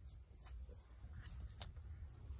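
Straight razor scraping across a wet scalp in several short, quick strokes during the first second, faint and close; a sharp click comes late on.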